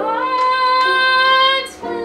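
Woman singing a show tune, holding one long high note that she slides up into at the start and releases about three-quarters of the way through with a brief hiss, then carrying on with vibrato.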